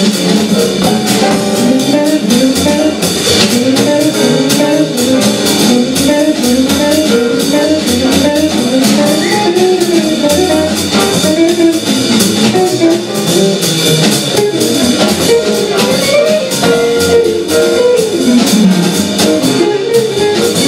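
Jazz quintet playing live: a hollow-body archtop guitar takes a solo of quick, rising and falling runs of notes over double bass and a drum kit with busy cymbals.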